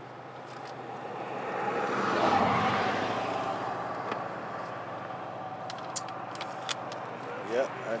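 A vehicle passing by on the road: a broad rush that swells to a peak about two seconds in, then slowly fades, over a steady low hum.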